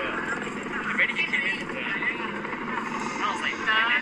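Voices talking over the steady drone of military helicopters, a twin-rotor Chinook among them, flying past.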